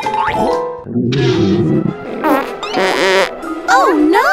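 Comedic cartoon-style sound effects over light background music: a low buzzy rasp about a second in, then a short noisy burst with wavering tones, and swooping pitch glides near the end.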